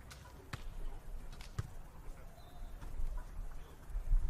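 A beach volleyball struck by hand: a sharp smack about half a second in as the jump serve is hit, and another hit on the ball about a second later, over faint open-air court ambience.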